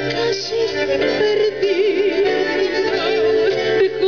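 A woman singing a tango with a strong vibrato, accompanied by bandoneons and a double bass.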